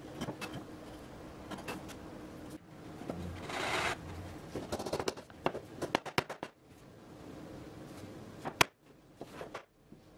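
Hand chisel paring sapele: light scraping cuts and small clicks, with one longer scraping stroke about three and a half seconds in and a sharper click near the end.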